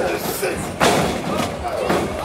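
A wrestler hitting the canvas of a wrestling ring with one loud thud just under a second in, with crowd voices around it.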